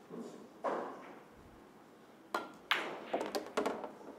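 Pool balls knocking on a table as a shot is played on the five ball: a click about half a second in, then two sharper clacks a little past two seconds, followed by a few lighter ticks as the balls settle.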